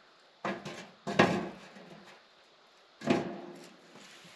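Metal mesh spark-screen lid being set down onto a steel fire pit: a few clanks, the loudest about a second in and another near three seconds, each ringing briefly.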